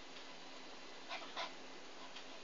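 Pomeranian puppy making two short, high vocal sounds close together a little past the middle, part of its whining, 'talking' way of communicating.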